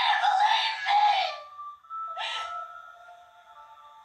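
A woman screaming in a horror film, heard through a TV, a high wavering cry that stops about a second and a half in, followed by a short burst and faint held music tones fading away.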